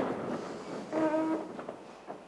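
Clothing rustle and chairs moving as a seated audience stands up, with one chair leg squeaking briefly on the floor about a second in.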